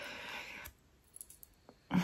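A soft breath out, then a few faint light clicks as a small metal chain-and-ring row counter is handled.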